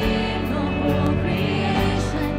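A live worship band playing a song: a woman's lead vocal over electric bass, keyboard and a steady beat.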